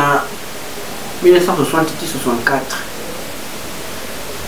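A man's voice speaking in a short phrase at the start and a longer one about a second in, with a steady hiss of background noise under the voice and through the pauses.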